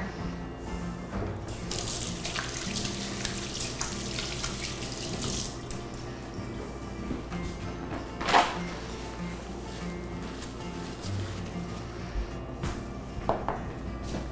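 Kitchen faucet running for a few seconds as hands are rinsed under it, over soft background music. A single short knock comes about eight seconds in.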